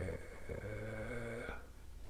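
A man's low, drawn-out hum on one steady note for about a second.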